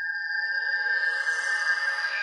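A synthesized electronic tone in the background music: a steady high ringing pitch with a faint shimmer above it.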